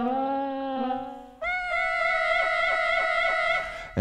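Granular synthesizer patch made from a kitten's meow sample, playing held pitched notes. A lower note fades out about a second and a half in, then a higher note with a quick, regular fluttering pulse sounds until near the end.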